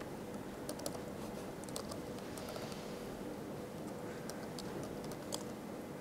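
Faint typing on a laptop keyboard: scattered, irregular keystrokes as a short terminal command is entered, over low room noise.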